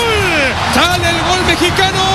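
A football TV commentator's excited, drawn-out shouting, with long held notes as he calls a goal, over a steady roar of stadium crowd noise.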